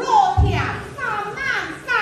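A woman singing a Min (Fuzhou) opera aria in dialect, her voice sliding in pitch from syllable to syllable. A brief low thump sounds about half a second in.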